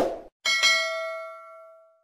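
Subscribe-button animation sound effect: a sharp mouse-click sound, then about half a second later a single notification-bell ding that rings out and fades over about a second and a half.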